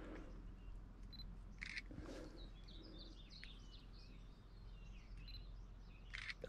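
Faint outdoor quiet with a small bird singing a quick run of short, high chirps from about two to four seconds in, and a brief rustle about a second and a half in.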